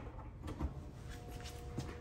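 A click and a few light knocks of handling, then about a second in a faint steady electrical hum starts: the power box beginning to drive heavy current through the graphite core of a pencil.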